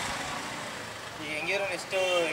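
Steady street traffic noise. A faint voice comes in about halfway through.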